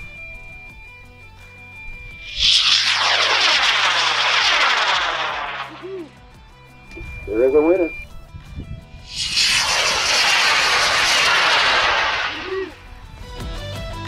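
Two model-rocket motors firing one after the other, each a loud rushing burst of a few seconds, the first about two seconds in and the second about nine seconds in, each preceded by a steady high beep. A short voice-like exclamation comes between the two bursts, and background music runs underneath.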